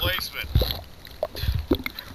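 Underwater sounds picked up by a submerged camera: a short gurgle at the start, then scattered dull low knocks and clicks.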